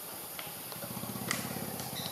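A low, steady motor hum with a fine regular pulse starts just under a second in. A sharp click comes about halfway through.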